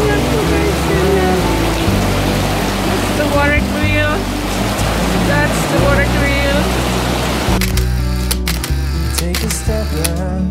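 Background music with a steady bass line and a singing voice, over the rush of stream water. The water noise cuts out about three-quarters of the way in, leaving only the music.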